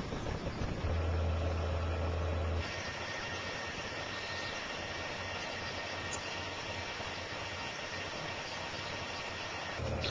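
Banner American EasyLam 27-inch roll laminator running, its motor turning the rollers as a starter card feeds through, a steady mechanical hum. About two and a half seconds in, a low hum drops away, leaving a quieter steady sound with a faint high whine.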